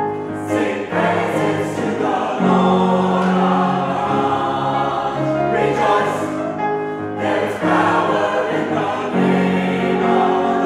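Mixed choir of men's and women's voices singing a gospel song in full chords, each held a second or two before moving to the next.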